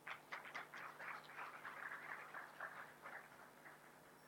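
Faint audience applause. A few separate claps turn into steady clapping, which thins out near the end.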